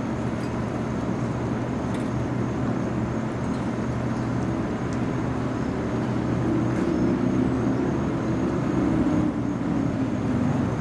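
Steady low engine rumble, swelling a little louder from about six seconds in, with a faint steady high-pitched whine above it and a few light ticks.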